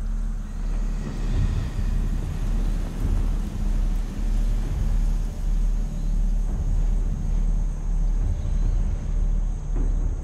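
A deep, steady rumbling drone with low held tones, swelling and easing in a slow regular pulse about three times every two seconds.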